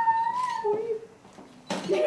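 A child crying in long, high, held wails, each cry breaking off after under a second, with a sharp sob near the end.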